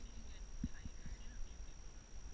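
Wind rumbling on the microphone, with a few soft knocks about halfway through as the climbers move against the rock.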